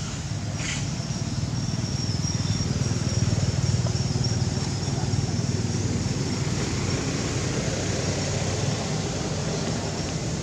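A motor vehicle engine running in the background: a low rumble that grows louder to a peak about three seconds in, then slowly fades.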